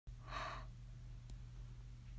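A tearful person sighs once, briefly, about half a second in, over a steady low hum.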